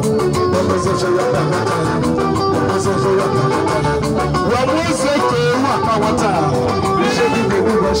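Live band music with a plucked guitar line, played loud and without a break.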